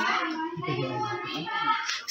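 Many overlapping voices of young children and adults chattering in a room, with no single voice standing out.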